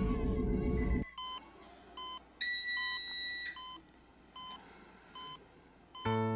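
Electronic patient monitor beeping, short even beeps about every 0.8 s, with one longer, higher tone lasting about a second near the middle. Before the beeps, a loud sustained sound cuts off abruptly about a second in.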